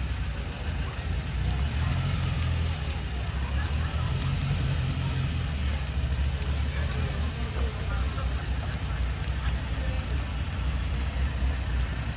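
Vintage Volkswagen Beetle's air-cooled flat-four engine running as the car creeps along at walking pace, a steady low rumble.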